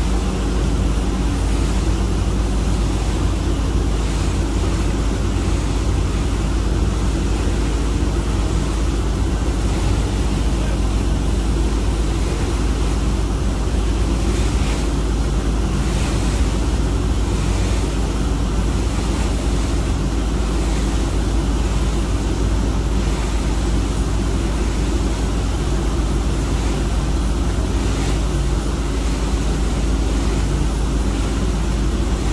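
Steady wind rumble on the microphone over a continuous low engine drone and the rush of water churned up by a launch running alongside a moving ship.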